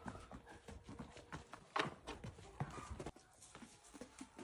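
Ostrich feet thudding irregularly on packed dirt as the birds run and twirl, with one louder knock a little before the middle.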